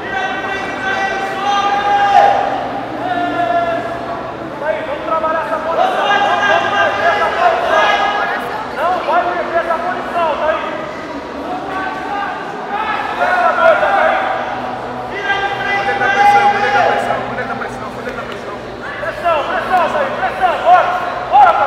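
Voices shouting and calling out in a large echoing hall, in bursts of a few seconds each with short lulls between. The calls are loud but no words can be made out.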